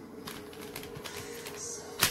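Hard Kydex plastic knife sheath being handled and laid down: a run of light clicks and taps, over a steady low hum.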